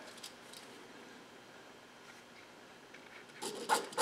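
Quiet room tone, then near the end a few quick, scratchy strokes of a FriXion erasable marking pen drawing a mark on cotton fabric at the napkin's corner.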